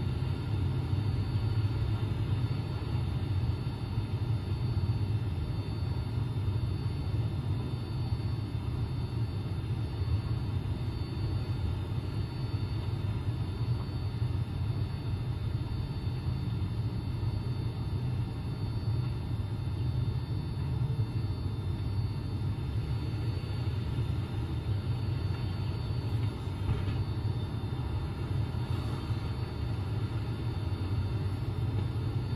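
Steady low background rumble, even throughout, with no distinct events.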